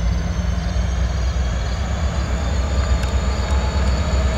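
CSX SD40-2 and SD70MAC diesel-electric locomotives heading a loaded autorack freight train, giving a steady low diesel rumble as the train rolls slowly in toward a stop. A faint thin high tone runs above it, slowly rising.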